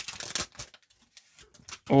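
Trading card pack wrapper crinkling and tearing as it is pulled open by hand, a quick run of crackles in the first half second, then a few faint rustles as the cards come out.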